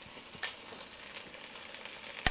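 Chicken frying in a wok over a gas flame, a steady quiet sizzle, with a sharp click of a metal spoon about half a second in and a few lighter ticks after.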